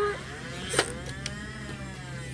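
Nerf Stryfe's battery-powered flywheel motors whirring as they spin up. The pitch rises and then slowly falls, with one sharp click a little under a second in as a dart is fired.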